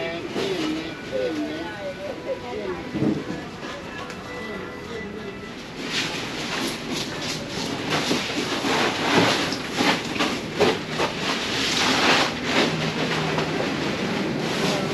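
Market alley ambience: background voices at first, then from about six seconds in a dense, rapid clattering and rattling that grows louder.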